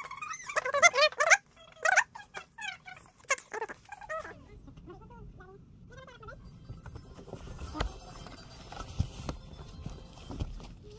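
A toddler squeals and babbles in high, bending cries, loudest about a second in, and fades out after about four seconds. Then comes a low, even rumble with a few sharp knocks.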